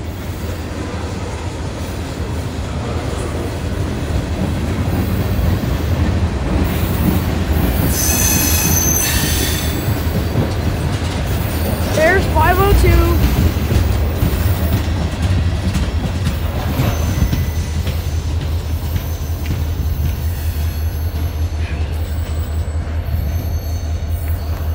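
A freight train of tank cars rolling past on the track, with a steady low rumble of wheels on rail. Brief high-pitched wheel squeal rises out of it about eight to ten seconds in.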